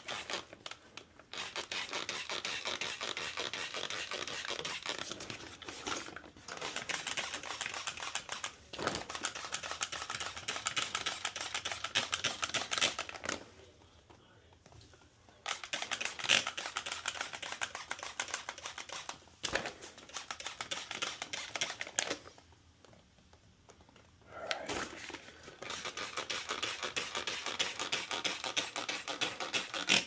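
Hand trigger spray bottle squeezed over and over, spraying Spray Nine cleaner-degreaser to saturate the dirty blower wheel of a ductless mini-split indoor unit. It goes in runs of rapid squeezes lasting several seconds, with a couple of short pauses.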